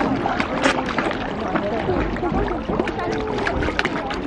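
A crowd of carp jostling and gulping at the water's surface: a dense, continuous patter of small splashes and slurping pops, with water sloshing against the pond edge.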